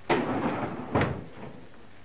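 A glass-panelled door being shut: two bangs about a second apart, each trailing off briefly.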